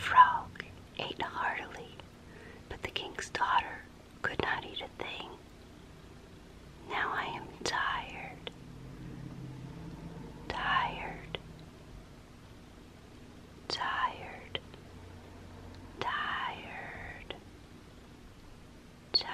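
A woman whispering close to the microphone in short phrases with pauses between them, with small wet mouth clicks here and there.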